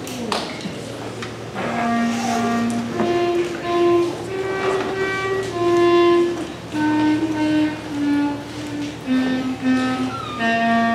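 School concert band of beginning players performing a slow melody in unison, the winds holding one long note after another. The playing begins about two seconds in, after a short knock at the start.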